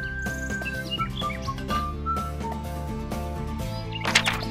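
Background music with long held melody notes, and a few short bird chirps about one to two seconds in.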